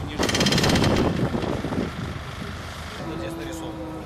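Jackhammer rattling in a loud rapid burst of about a second near the start. A steady single tone sounds through the last second.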